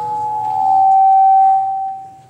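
Public-address feedback from the church sound system: a single loud sustained tone that steps slightly lower in pitch about half a second in, swells, and fades away near the end.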